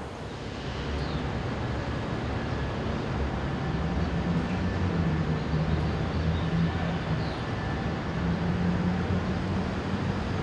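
Steady city traffic noise with the low hum of a large engine, growing louder over the first few seconds and then holding.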